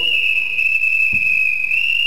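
A single loud, steady high-pitched whistling tone, held without a break, its pitch shifting slightly near the end.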